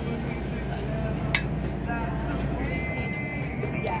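Boat's engine running with a steady low rumble that eases off about three seconds in, under passengers' voices in the background; one sharp click about a third of the way through.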